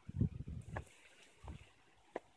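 Handling and footstep noise from a phone carried while walking: a few low thuds and rumbles in the first half second and again about a second and a half in, with faint clicks, then little but quiet background.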